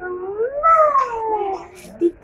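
A toddler's long, high-pitched delighted squeal that rises and then slowly falls in pitch.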